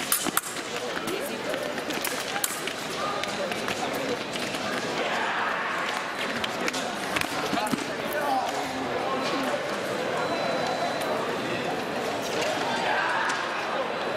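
Sabre fencing action: a quick flurry of sharp clicks and thuds near the start as the blades meet and the fencers' feet strike the strip, then a few scattered clicks over the steady chatter of a crowded tournament hall.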